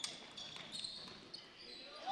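Faint basketball game sounds from the court: a ball bounce and sneakers squeaking on the hardwood floor as players scramble for a loose ball.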